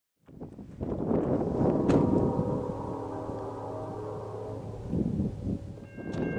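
Wind buffeting the microphone outdoors, with a single click about two seconds in and a faint steady chord of several tones held for about three seconds in the middle.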